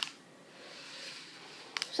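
A quiet pause: low hiss with a click at the start and two quick clicks near the end.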